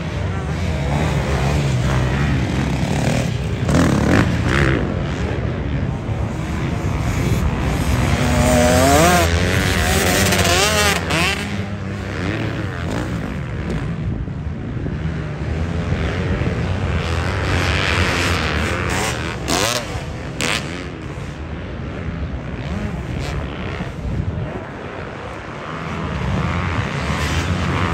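Motocross dirt bikes racing on the track, heard from a distance. Their engines rev up and fall back as the riders work through the sections. One bike rises and falls in pitch most loudly from about eight to eleven seconds in.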